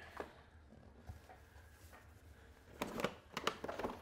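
Packing paper rustling and crinkling as hands dig through a cardboard shipping box, a short cluster of rustles starting about three seconds in.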